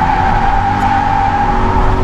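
Subaru BRZ drifting on dry tarmac: its tyres squeal in one long steady high tone that stops shortly before the end, over the 2.0-litre flat-four engine running under load.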